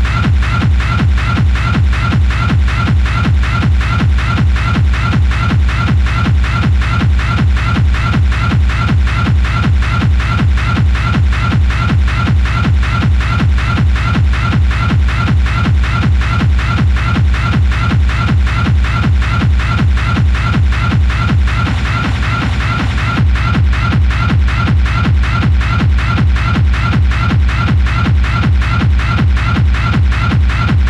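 Schranz hard-techno DJ mix: a fast, driving four-on-the-floor kick drum with dense percussion over it. The low end briefly thins about two-thirds of the way through before the full beat returns.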